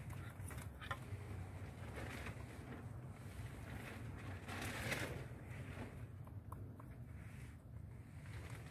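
Low steady rumble of wind on the microphone, with a few faint clicks and a brief rustling swell about five seconds in.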